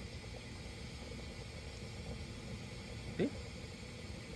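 Faint outdoor background noise, a low even rumble with no distinct events, and one short spoken word near the end.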